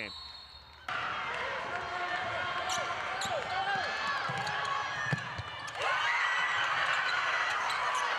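Live basketball court sound: a noisy crowd in the arena, sneakers squeaking on the hardwood floor and a basketball being dribbled. It starts about a second in, and there is a sharp thud about five seconds in.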